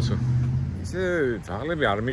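Mostly a man talking, over a steady low vehicle engine hum that stops about two-thirds of a second in.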